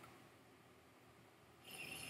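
Near silence, with a faint breathy sniff near the end as a glass of whisky is nosed.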